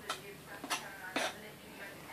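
Kitchen knife cutting through sponge cake, its blade scraping and tapping on a foil-covered cake board in three short strokes about half a second apart.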